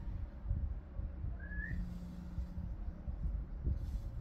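A single short, rising, whistle-like chirp about a second and a half in, over a low, steady background rumble.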